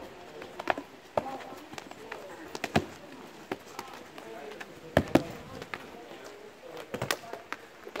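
Practice swords and axes clacking against each other and against shields in a close line fight: irregular sharp knocks, a few loud ones in quick pairs, with faint children's voices underneath.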